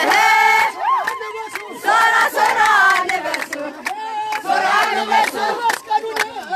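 A crowd shouting and cheering together in loud, long calls, with hand claps throughout.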